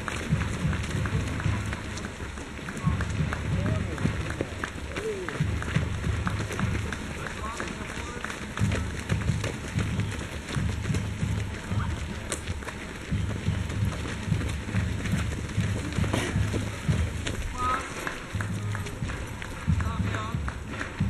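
Runners' footsteps on a dirt forest path as a race field passes close by, many quick irregular strikes, with faint voices and a low rumble that comes and goes.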